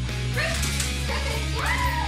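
Background rock music with guitar, over which a Greater Swiss Mountain Dog gives a few short rising-and-falling whines and yips, starting about half a second in.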